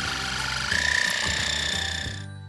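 Electric ear-irrigation pump running during an ear-canal flush, a high steady whine with a fine pulsing ripple that steps up in pitch about two-thirds of a second in. Soft background music plays underneath.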